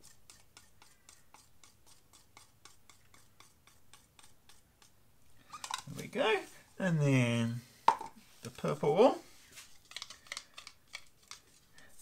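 Stir stick scraping the last acrylic paint out of a plastic cup, a quick run of light ticks about five a second through the first few seconds. A man's voice is heard briefly in the middle.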